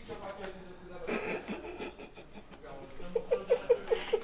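Quiet talk between men, then a short run of laughter near the end, over light rubbing and handling noise.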